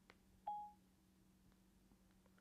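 A single short electronic beep about half a second in, the iPad's dictation tone sounding as voice dictation stops; otherwise near silence.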